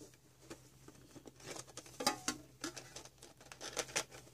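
A metal Pokémon card tin being opened by hand: the lid is worked off and the plastic insert inside is handled, making a scatter of light clicks, taps and crinkles, louder in the middle and near the end.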